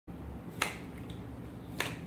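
Tarot cards being handled on a desk, giving two sharp clicks about a second apart over a low steady hum.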